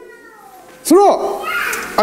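Speech only: a man preaching says one short word with a rise and fall in pitch about a second in, between brief pauses, with a little room echo.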